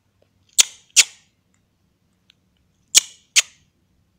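Four sharp, loud clicks close to the microphone, in two quick pairs: two a fraction of a second apart about half a second in, and two more near the three-second mark.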